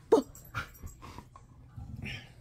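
A dog whining: one short call falling in pitch just after the start, then a softer one about half a second later.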